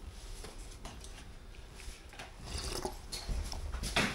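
Faint scattered small clicks and rustles, a little busier in the second half: a paper cup and other things being handled on a kitchen counter.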